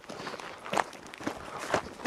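Footsteps on dry, stony dirt: three slow steps about half a second apart.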